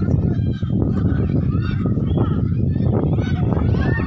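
Several children's voices shouting and calling over one another, high and overlapping, over a steady low rumble.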